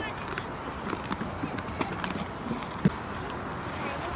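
Goats' hooves knocking and scuffling: an irregular patter of short knocks, with one sharper knock about three seconds in.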